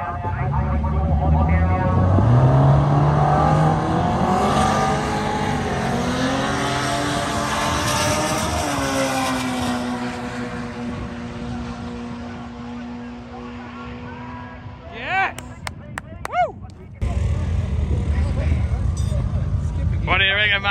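Honda K24 four-cylinder drag car making a full-throttle quarter-mile pass, heard from the side of the strip: the engine note jumps up at launch and keeps climbing in pitch with steps at the gear changes, loudest in the first few seconds. It then settles to a lower, slowly falling note and fades as the car slows down the track.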